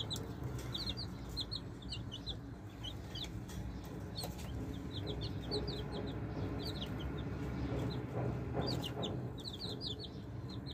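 Baby chicks peeping: many short, high-pitched peeps in quick runs of several a second, over a steady low background noise.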